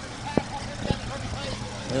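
Vintage tractor engine running steadily at low revs, with two sharp clicks in the first second.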